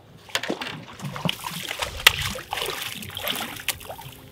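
A hooked redfish splashing and thrashing at the water's surface beside the boat as it is grabbed and lifted out by hand. The splashes are irregular and sharp, starting about a second in.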